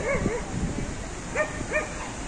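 A small dog yapping in short, high barks: two right at the start and two more about a second and a half in.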